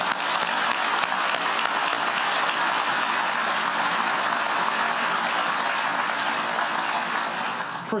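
Large audience applauding, a steady dense clapping that tapers off near the end.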